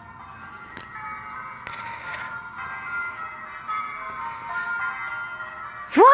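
Recorded church wedding bells ringing in overlapping peals, played through a laptop's speakers.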